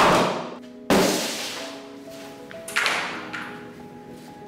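Large cardboard box being shoved and moved across a floor: three loud thuds with scraping tails, at the start, about a second in and about three seconds in, over background music of soft held notes.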